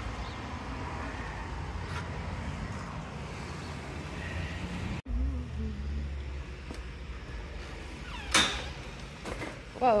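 Steady low outdoor background hum, then a commercial glass-and-metal entry door pulled open at about eight and a half seconds in, a brief sharp sound.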